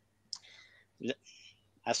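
Soft mouth sounds from a man pausing while reading aloud: a sharp click about a third of a second in, a faint breath, then a brief half-voiced click about a second in before he speaks again.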